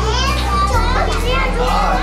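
Young children's voices chattering and calling out in a classroom, over a background music track with a steady low bass.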